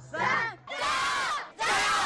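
A team of dragon-dance performers shouting a rallying cheer in unison, "yī, èr, sān, jiāyóu!" ("one, two, three, go!"). Three loud group shouts are heard, the middle one the longest.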